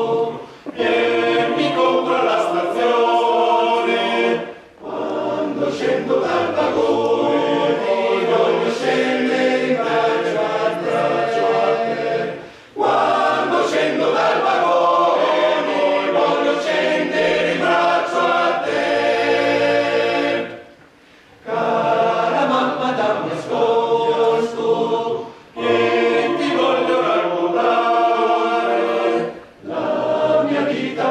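Male choir singing a cappella in several voice parts: a folk-song arrangement sung in long phrases, each ending in a brief pause before the next begins.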